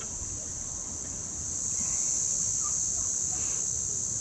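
Steady high-pitched drone of insects, over a low rumble of wind on the microphone that swells a little in the middle.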